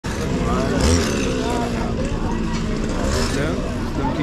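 Several people talking over one another, like a crowd, over a steady low engine rumble from a motor vehicle.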